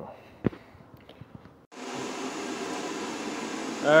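A sharp click and a few faint taps, then a steady hiss of background noise starts abruptly a little under halfway through and runs on evenly.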